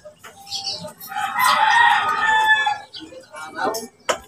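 A rooster crowing once, a single drawn-out crow of about a second and a half starting about a second in.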